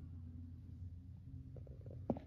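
Low, quiet steady hum of room background, with a few faint clicks near the end.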